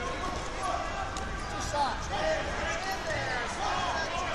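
Busy wrestling-tournament hall: many overlapping voices and shouts from coaches and spectators echoing in the large room, with short squeaks and thuds from the mats.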